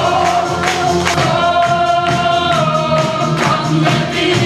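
Group of voices singing over backing music with a steady beat, holding one long note through the middle.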